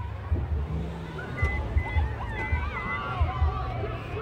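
Faint background music over a low, uneven rumble, with four short high beeps in the middle.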